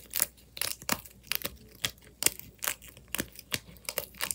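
Homemade 'simple dimple' fidget made from an empty plastic blister pack, its bubbles pressed in and out with the fingers: a quick, irregular run of sharp plastic clicks and crinkles, several a second.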